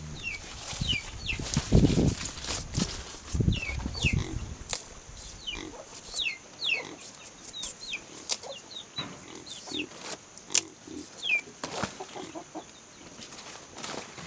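Soybean stems and taro leaves being sorted by hand, rustling with sharp snaps and clicks. An animal grunts low in the first few seconds, and short, high, falling chirps of small birds repeat throughout.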